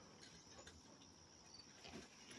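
Near silence, with faint, steady chirring of crickets.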